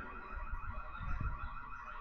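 A high warbling tone that repeats several times a second, over a low rumble.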